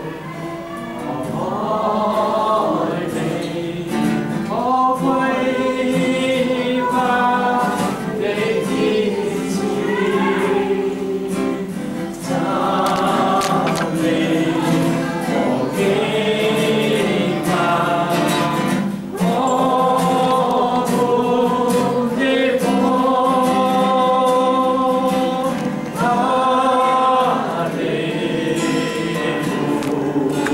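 A congregation singing a hymn together in unison, in long held phrases.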